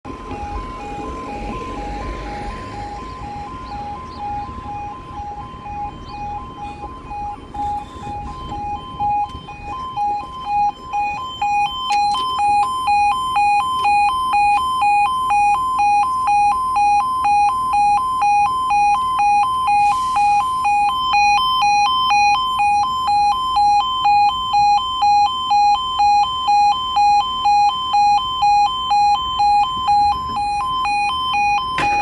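Level crossing warning alarm sounding a two-pitch tone that pulses rapidly and steadily, fainter at first and louder from about twelve seconds in. A van drives across the crossing during the first few seconds.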